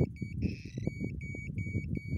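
Homemade ionic/electrostatic long range locator beeping in a rapid series of short high beeps, about three a second, with one longer beep about half a second in. The beeping is its signal that it has found its buried target of gold leaves.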